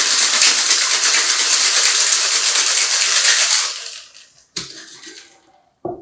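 Ice rattling hard inside a gold metal two-tin cocktail shaker being shaken, for about four seconds, then fading as the shaking stops. A knock follows, then a short thud near the end as the tins are pulled apart.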